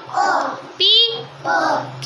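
A class of young children chanting letter sounds together in a sing-song rhythm, one syllable roughly every two-thirds of a second.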